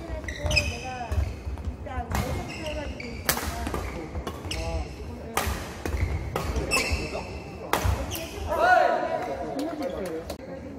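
Badminton doubles rally on an indoor court: rackets strike the shuttlecock about once a second, and shoes squeak on the wooden floor. Voices are heard throughout, loudest near the end as the rally finishes.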